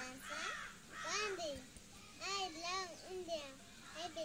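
A young child speaking in short phrases in a high voice, reciting lines.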